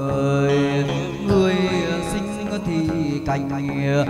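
Chầu văn ritual music: a singer's wavering, gliding melody over instrumental accompaniment with light struck beats.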